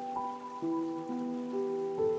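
Slow, soft piano music, single held notes entering about every half second, over the steady hiss of a flowing stream.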